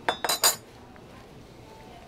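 Metal fork and knife clinking against a ceramic plate while cutting into food: three quick clinks with a short ringing, all within the first half second.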